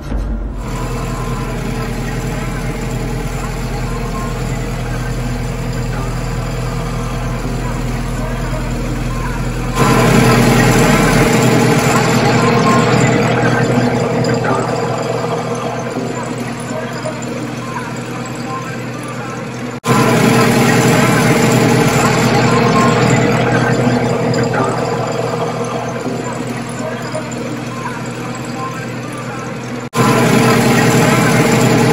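Tractor diesel engine running steadily under a front-end loader load. The sound jumps louder twice, about a third and two thirds of the way in, then eases off gradually each time.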